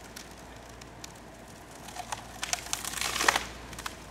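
Cottonwood trunk top cracking and splintering as the cut section tips over and its hinge wood tears apart: a run of sharp cracks and crackles that starts about halfway and is loudest near the end.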